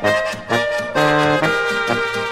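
A Slovenian folk polka played by an ensemble, with brass carrying the tune over low bass notes; the notes change about every half second.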